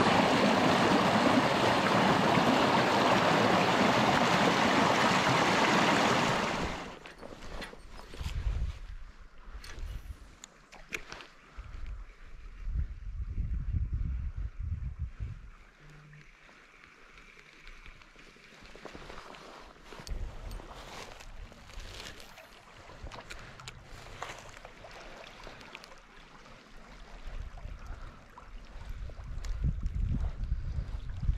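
Stream water rushing and churning through a small rapid past a log, loud and steady, cutting off sharply about six and a half seconds in. After that only a faint, uneven low rumble with scattered clicks remains.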